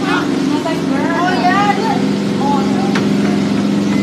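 Treadmill running with a steady motor hum, with voices over it.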